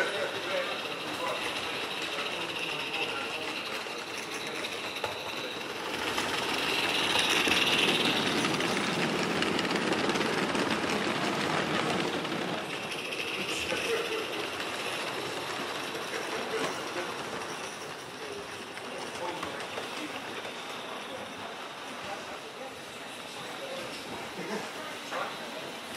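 16mm-scale live steam model locomotive and its train running on the layout's track, with a steady hiss. It grows louder as it passes close, from about six to twelve seconds in.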